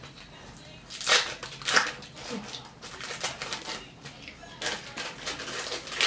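Plastic wrapping crinkling as individually wrapped cheese slices are unwrapped by hand. There are two louder crackles about a second in and just before two seconds, then softer rustling.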